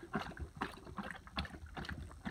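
Otterhound lapping water from a metal bowl: quick wet laps, several a second, in an uneven rhythm.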